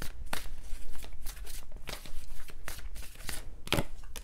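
A tarot deck being shuffled by hand: a run of soft, irregular card clicks and flicks, with one sharper snap shortly before the end.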